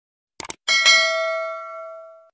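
Subscribe-button animation sound effect: a quick double click, then a notification-bell ding that rings out and fades away over about a second and a half.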